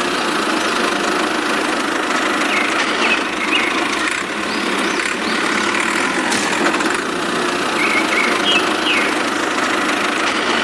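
Tractor engine running steadily at idle with a knocking beat. A few short high chirps sound over it about three seconds in and again near the end.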